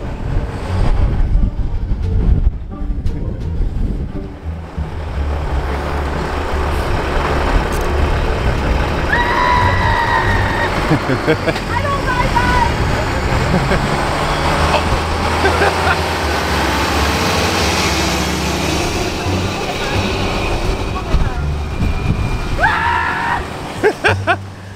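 A motor vehicle going by on the road, a steady engine and tyre noise over a low rumble that lasts the whole time.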